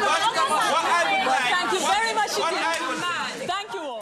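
Several people talking over one another at once: overlapping voices from a studio discussion audience, too tangled for single words to stand out.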